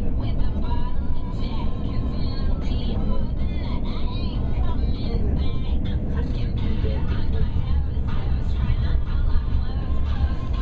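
Steady low rumble of a moving passenger train heard from inside the carriage, with voices over it.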